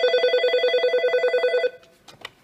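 Nortel T7316 desk phone's electronic ringer sounding for an incoming call: a fast-warbling pitched tone that cuts off about three quarters of the way through as the call is answered.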